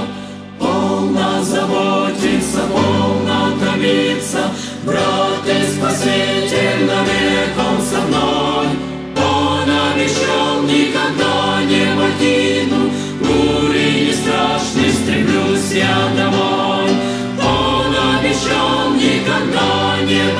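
A Christian song: a choir singing with instrumental accompaniment, with no words made out.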